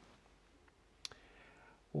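A pause in speech filled with quiet room tone, broken by a single short click about a second in, then a soft hiss lasting most of a second before speech resumes.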